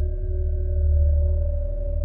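Ambient electronic music: a deep, steady bass drone under long-held, pure ringing tones, with no beat.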